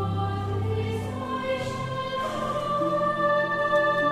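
Recording of a church choir singing a psalm with orchestral accompaniment: long held chords, shifting to a new chord about two seconds in and growing louder toward the end.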